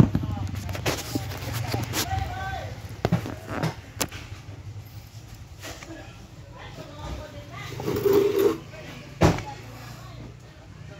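Indistinct background voices over a steady low hum, broken by a few sharp clicks and knocks; the loudest knock comes near the end.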